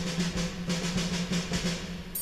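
Snare drum on a drum kit struck in a steady run of even strokes, about six a second, over a low held note.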